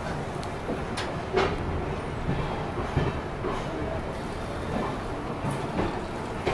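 Passenger train noise heard at an open coach doorway: a steady low rumble with a few sharp clacks scattered through it.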